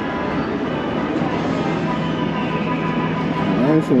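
Casino floor ambience: the steady electronic tones and jingles of slot machines over a background of crowd chatter.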